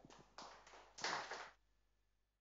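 A few scattered, faint hand claps from a small audience at the end of a talk, stopping about a second and a half in.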